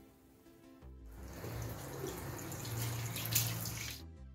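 Tap water running into a sink, starting about a second in and cutting off abruptly, over soft background music.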